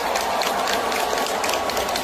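Large arena crowd cheering and clapping, a steady dense roar of voices with many sharp claps running through it.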